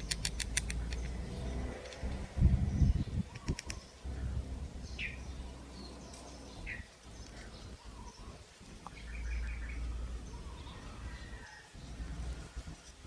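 Birds chirping in the background: short falling chirps and quick trains of high ticks. A low rumble with bumps is the loudest sound, about two to three seconds in.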